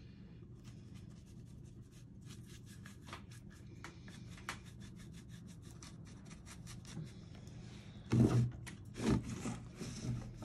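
Paintbrush bristles rubbing over painted wood in a run of short, scratchy strokes. Near the end come two louder bumps and scrapes as the wooden cut-out is shifted on the table.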